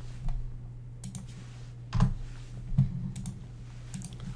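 Computer keyboard keystrokes and mouse clicks while a spreadsheet formula is entered: about five separate clicks over a low, steady hum.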